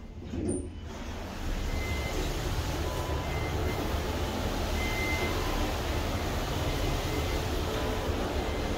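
Elevator car doors sliding open near the start, then the steady background rumble of the metro station coming in through the open doors, with a few faint short beeps.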